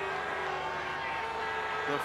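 Stadium crowd noise, a steady murmur of many distant voices, as a rugby league crowd waits on a conversion kick.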